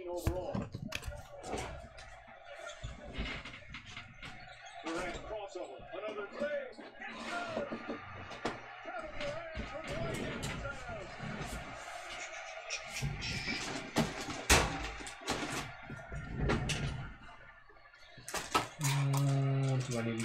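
Quiet background music with a singing voice, broken by scattered light clicks and taps from trading cards being handled and moved.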